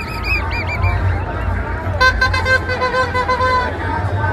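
Noisemakers in a marching crowd: a whistle blown in a quick trill of short chirps at the start, then, about two seconds in, a horn sounds one held, pulsing note for about a second and a half, over steady crowd chatter.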